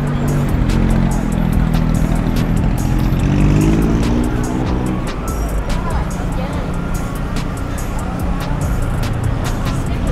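Background music over city street traffic: cars idling and creeping along in slow traffic.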